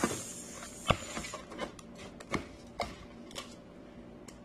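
Metal spoon scooping rice filling from a plastic tub and stuffing it into a hollowed vegetable: a brief rustle at the start, then about five light clicks and knocks of the spoon, roughly one every half second.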